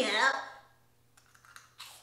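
A woman's voice trails off in the first half-second, then faint, sharp crinkles and crunches come from a foil snack bag and the cheese doodles being eaten from it.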